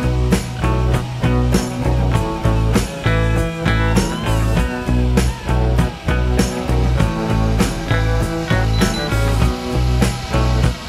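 Background music with a steady beat and a strong bass line.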